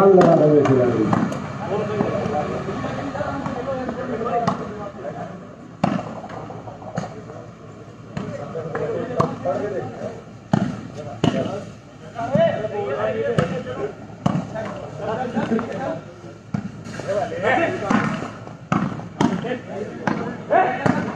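A volleyball struck with the hands again and again during a rally: sharp smacks a second or two apart, over players and onlookers shouting.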